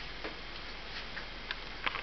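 Three light handling clicks, the last and loudest just before the end, over a steady background hiss and low hum.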